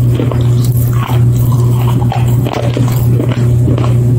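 Crisp crunching bites into hard white food sticks, several sharp crunches spaced about half a second to a second apart. A loud steady low hum runs underneath.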